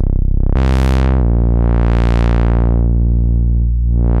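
Novation Bass Station II analog synthesizer playing a low bass preset: a held note that changes pitch about half a second and again about a second in, its filter sweeping open and closed so the tone brightens and darkens.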